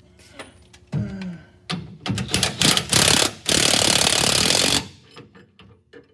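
Impact wrench hammering in rapid, uneven bursts for about a second and a half, then running in one solid burst of just over a second that cuts off suddenly.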